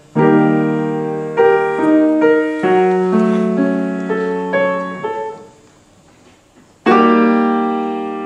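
Piano being played: a chord, then a few single notes and chords over about five seconds, each left to ring and fade. After a short pause, a loud chord is struck near the end and rings on.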